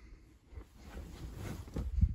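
Faint rustling of a quilt and low handling bumps on a handheld phone's microphone as it is carried up under the quilt.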